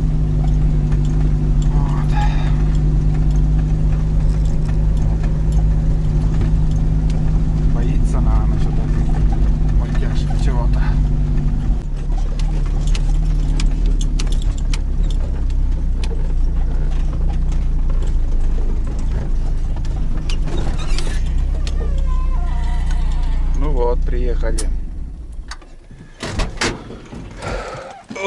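UAZ truck's engine running steadily, heard from inside the cab as it drives along a bumpy forest track. About twelve seconds in the engine note drops as it slows; near the end the engine is switched off and there are a few clunks as the cab door opens.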